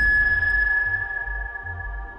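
Trailer sound design: a high electronic ping-like tone that starts sharply and rings on, slowly fading, over a low pulsing bass.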